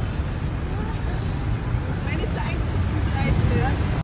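Steady low rumble of city street traffic, with people talking faintly over it.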